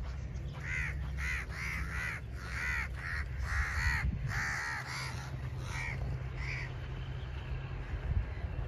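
Crows cawing: a quick run of harsh caws that thins out and stops about six and a half seconds in, over a low steady rumble.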